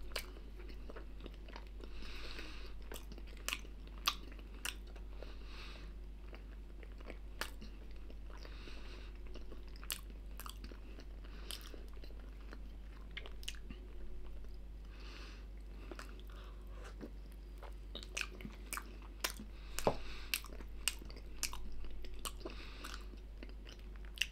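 A person chewing a soft, filled snack pastry with the mouth, giving many short wet clicks and smacks, more frequent and louder near the end, over a steady low hum.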